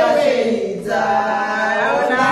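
A group of voices singing or chanting together without instruments, with a short break just before a second in.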